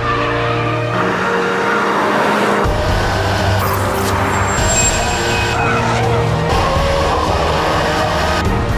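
Seat Leon Cupra 280's turbocharged 2.0-litre four-cylinder engine running hard at racing speed on track, mixed with background music.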